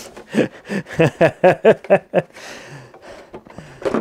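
A man laughing in a quick run of short voiced syllables for about two seconds, then a breathy exhale.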